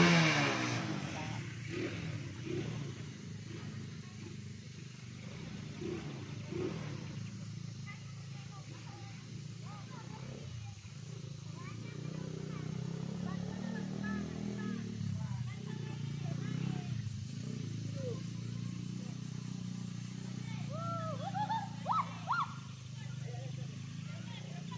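Small ATV engine running as the quad is ridden, its pitch rising and falling with the throttle, loudest in a rev right at the start.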